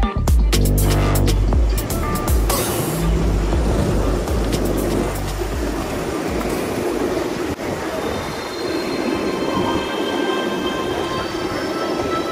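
Electronic music with a heavy bass beat that stops about halfway through, giving way to the steady rolling noise of skateboard wheels on asphalt, with thin high-pitched tones coming in near the end.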